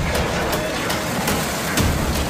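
Heavy low rumble and rushing water as a large cargo ship slides sideways off its launch ways into a canal, its hull throwing up a wall of spray.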